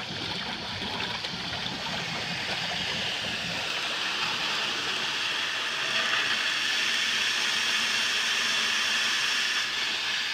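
Hydro jetter running at about 4,000 PSI inside a four-inch cast iron sewer line: a steady hissing rush of high-pressure water spraying through the pipe and the clear jetter tool body, growing a little louder in the first few seconds. It is scouring heavy scale and corrosion out of the line.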